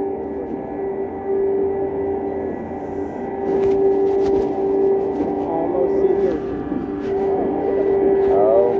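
Steady droning hum of a drop tower's lift as the gondola climbs, holding one pitch throughout, with a few light clicks about halfway through and faint voices.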